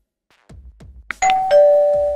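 Stock subscribe-button sound effect: a few soft beats, a sharp click about a second in, then a two-tone ding-dong bell chime, a higher note followed by a lower one, both held to the end.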